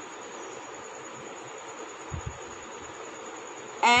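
Steady background hiss with a faint high whine, a couple of soft low thumps about two seconds in, and a woman's voice beginning a word at the very end.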